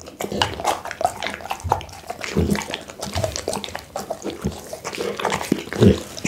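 Pit bull eating raw meat close to a microphone: wet chewing, smacking and licking, with irregular clicks and a few heavier low thuds.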